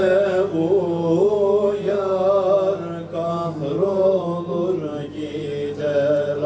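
A man reciting the Quran in Arabic into a microphone, in a slow melismatic chant of long held notes that bend and ornament.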